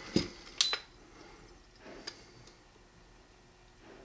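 Light metal clicks from a trigger-pull gauge hooked on a Beretta 92X's trigger during a single-action dry-fire pull: two sharp clicks about half a second apart near the start, then near quiet.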